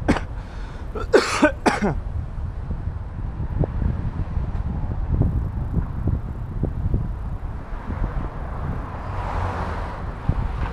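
Street ambience under a steady low wind rumble on the microphone, while walking a city sidewalk. A few short coughs come about a second in, and a vehicle passes near the end.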